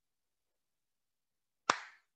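Dead silence, then near the end one sharp hand smack that dies away quickly.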